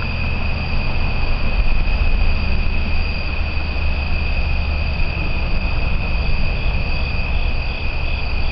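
Night insect chorus of crickets: a steady high-pitched trill that runs unbroken, with a fainter pulsing call of about two beats a second joining near the end. A steady low rumble lies underneath and is the loudest part.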